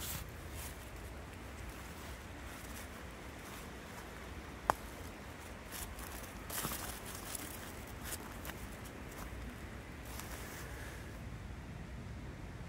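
Footsteps and rustling on dry leaf litter as someone walks around camp, a few irregular scuffs and rustles over a low steady background hum. A single sharp click stands out a few seconds in.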